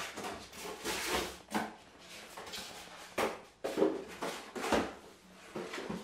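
Cardboard box and packing material being handled as hands rummage inside an appliance box: irregular rustling and scraping of cardboard, foam and plastic wrapping, with a few sharper bumps in the middle.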